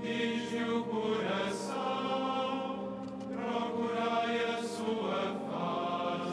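Choir chanting a psalm in Latin-style plainsong, with long held notes and sung words.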